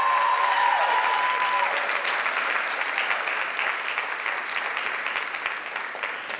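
Audience applause that slowly dies away, with one voice holding a long, high cheer over the first second or so.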